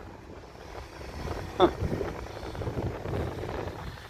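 A car driving past on the road, a low rumble of engine and tyres that grows louder about a second in.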